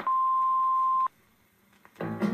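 A single steady electronic beep on one pitch, about a second long, switching on and off abruptly.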